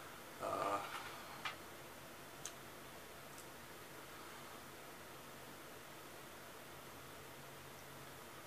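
Quiet room tone: a brief low, pitched vocal sound from a man about half a second in, then a few light clicks over the next couple of seconds, then only a steady faint hiss.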